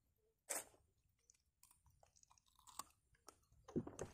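Near silence broken by faint handling noises: one brief rustle about half a second in and a few soft clicks near the end.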